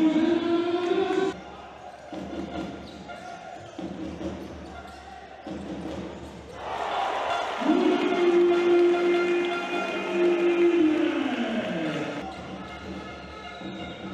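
Basketball game sound in a large hall: the ball bouncing under crowd noise. A long drawn-out vocal call is held on one pitch twice. The first slides up into its note at the start and breaks off after about a second; the second lasts about four seconds and falls away near the end.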